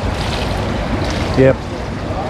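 Steady rushing and splashing of pool water churned by a young swimmer's butterfly arm strokes.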